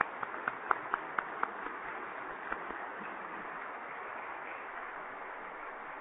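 Audience applauding: separate hand claps in the first second and a half merge into steady, dense applause.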